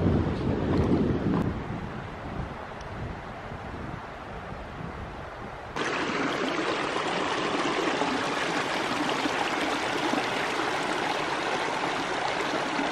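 Low wind rumble on the microphone, dying away, then after an abrupt cut about halfway, a small mountain creek running steadily over rocks.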